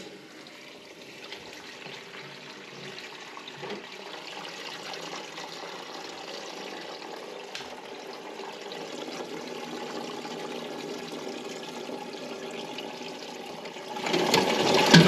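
Water running into a newly installed Olive's concealed in-wall toilet cistern through its fill valve, just after the supply valve is opened for a first test: a steady hiss that grows slightly louder, with a couple of faint clicks.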